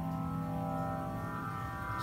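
Synthesis Technology E370 quad morphing VCO, its four oscillators playing a PPG 30 wavetable as a sustained chord of several steady pitches.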